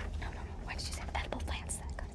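Soft whispering with the rustle of book pages being turned.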